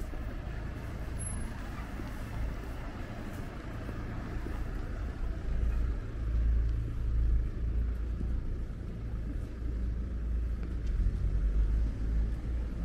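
Passing car traffic: a steady low rumble that grows louder about halfway through and again near the end.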